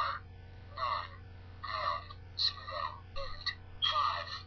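iPhone talking keypad: each tapped key plays a short recorded voice clip calling out its digit, about seven short, tinny calls in quick succession through the phone's small speaker.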